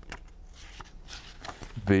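Paper pages of a picture book rustling as the book is handled and turned, with a few soft, short clicks of paper.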